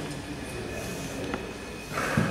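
Steady low rumble of a large indoor bocce hall, with a faint steady high-pitched tone over it and one small click a little past halfway. Near the end the sound swells as a bocce ball is delivered onto the synthetic court.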